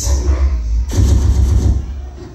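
Loud, bass-heavy dance music through a mobile DJ's sound system in a hall, with deep booming hits and a sharp hit about a second in. It drops away right at the end.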